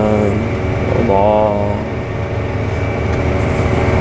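CLAAS Axion 830 tractor running steadily: a low engine drone heard from inside the cab, with a faint steady high whine over it.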